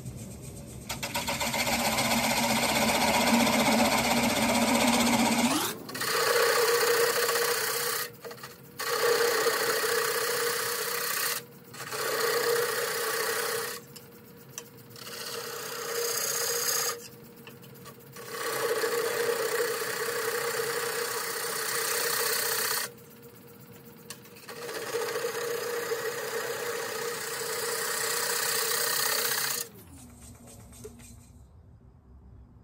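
A turning tool cutting away the tenon on the base of a California pepper wood dish spinning on a lathe, with shavings coming off. The cuts come in passes of a few seconds each, with short pauses between them where only the quieter running of the lathe is heard.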